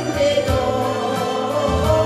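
A woman singing into a microphone over a backing track with a steady bass line, holding a long note in the second half.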